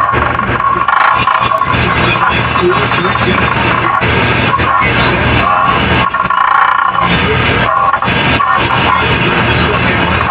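Loud, dense, harsh noise that stops sharply above about 5 kHz, with a steady buzzing band in it and many brief dropouts throughout.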